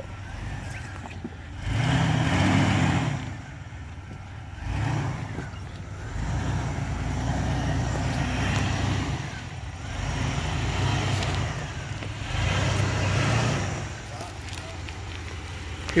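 Jeep Wrangler TJ Sport's 4.0-litre straight-six crawling over rocks at low speed, its engine note swelling under throttle and easing off again several times as the driver picks a line through the boulders.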